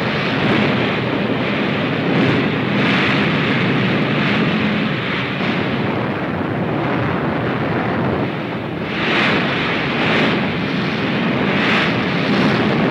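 Katyusha rocket salvo: a continuous rushing hiss of rockets firing, swelling into louder whooshes about three seconds in, again around nine to ten seconds, and at the very end, on a worn 1940s film soundtrack.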